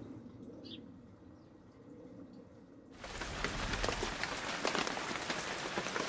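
Faint outdoor background with a single soft bird chirp under a second in. About halfway through, a steady hiss full of fine crackles cuts in abruptly, like rain or old-film noise.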